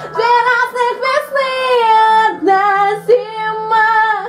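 A woman singing a rock ballad in long, drawn-out notes over a quiet piano backing track.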